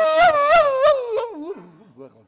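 A long wailing howl-like cry: it rises in pitch, is held high with a wavering pulse about three times a second, then slides down and fades out about a second and a half in.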